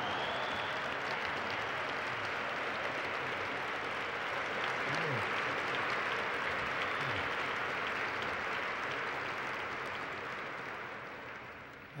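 A large audience applauding: steady, dense clapping that tapers off near the end.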